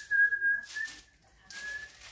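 A thin, steady, high whistling tone that rises slightly as it begins and holds for about a second, then sounds again briefly near the end, over a soft rustling.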